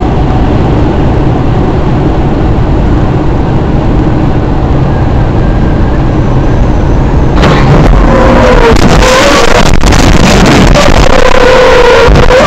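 Car driving at highway speed, heard from inside through a dashcam microphone: loud, steady road and engine noise. About seven and a half seconds in it turns louder and harsher, with crackling and a wavering squeal.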